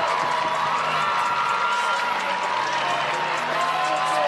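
Basketball arena crowd noise with cheering and clapping over music that holds long, steady notes.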